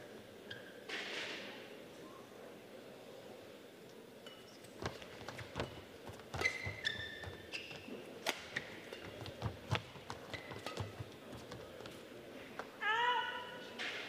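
Badminton rally on an indoor court: sharp racket hits on the shuttlecock and knocks of footwork begin about five seconds in, with short high squeaks of court shoes on the floor mat and a longer squeak near the end.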